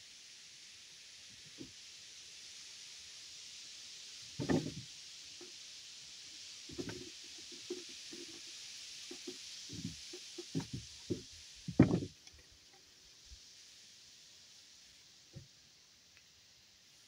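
Irregular dull wooden knocks and thumps of lumber being handled and set against a timber floor frame. They come scattered, with a busier run of knocks in the second half and the loudest near the end of it, over a steady high hiss.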